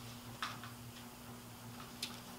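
Quiet room with a steady low hum and a few faint ticks and rustles of clothing and feet from a person moving through a martial arts form, the clearest about half a second in.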